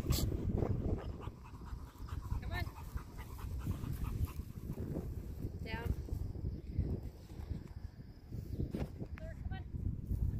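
Animal cries, either the dog whining or the goats bleating, come three times, short, high and wavering: about two and a half seconds in, near the middle, and twice close together near the end. A steady low rumble runs underneath.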